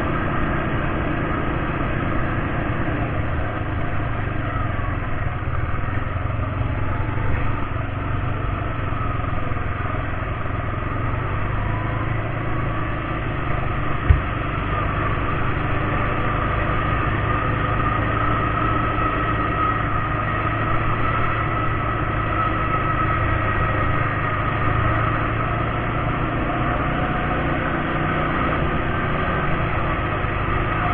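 ATV engine running steadily while riding along a paved road, with one sharp knock about halfway through.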